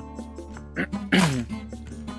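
Background music with steady held tones, and a short loud burst with a falling pitch a little over a second in.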